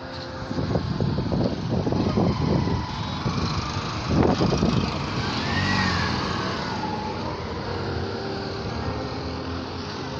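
Street traffic noise from passing road vehicles, louder and uneven for the first five seconds or so, then steadier.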